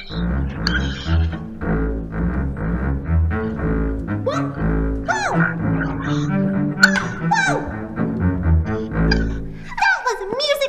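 Double bass played with a bow: a string of short, low bowed notes one after another.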